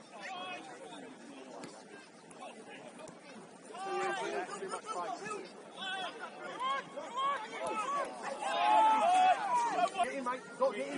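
Footballers shouting and calling to each other across an open pitch during play. The voices are distant at first and get louder from about four seconds in, loudest near the end.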